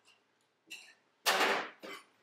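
A metal pie server and knife scraping against a ceramic pie dish while cutting and lifting out a slice of pie. A faint scrape comes a little after half a second in, a louder scrape about a second and a quarter in, and a short one near the end.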